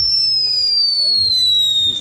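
Ground whistling firework going off: one long, shrill whistle that slowly falls in pitch.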